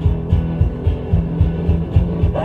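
Live guitar music: guitar notes ring over a steady low thumping beat about twice a second.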